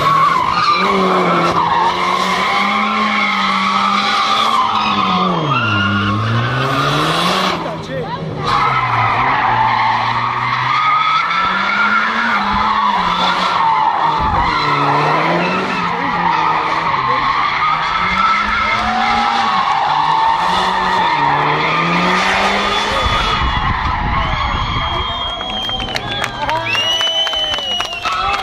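Mitsubishi Lancer Evolution's turbocharged four-cylinder engine revving up and down over and over as the car slides round in circles, its tyres squealing almost without a break. There is a brief drop in revs and squeal about eight seconds in.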